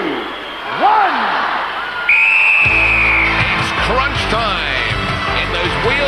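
Two drawn-out shouted calls near the start. About two seconds in comes one long, high whistle blast, which signals the start of the event. Just after it, loud music with a heavy bass kicks in.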